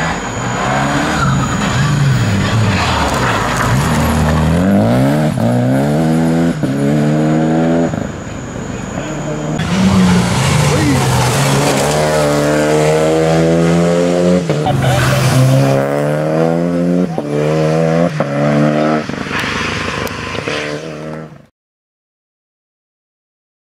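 Renault Clio Rally5 rally car accelerating hard through the gears. The engine note climbs in pitch, then drops back at each upshift, over and over. The sound cuts off suddenly near the end.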